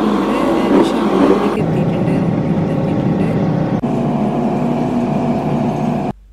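Steady road and engine noise inside a taxi cabin moving at highway speed.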